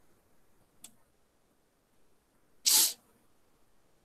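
A single short, loud burst of breath noise from a person close to the microphone, about two and a half seconds in, with a faint click about a second before it.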